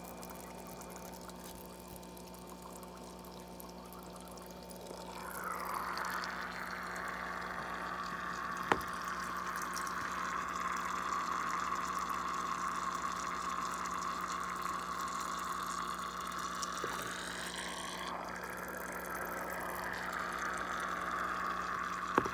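Water bubbling and trickling from an air-driven sponge filter, a steady watery hiss that grows louder about five seconds in, over a low steady hum, with a single click near nine seconds.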